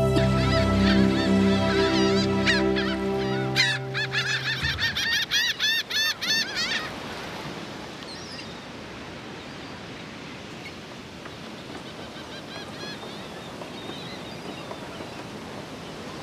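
Birds calling over and over in quick succession, heard over a sustained music chord that ends about five seconds in; the calls stop about seven seconds in, leaving a steady outdoor hiss with a few faint calls.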